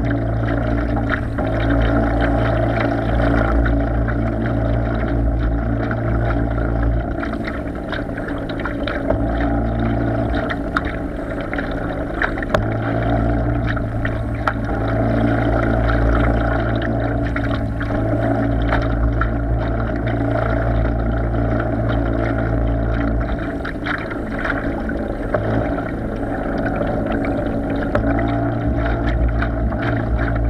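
Radio-controlled bait boat's motor running steadily, heard from on board with water splashing against the hull close by. The low hum dips briefly a few times.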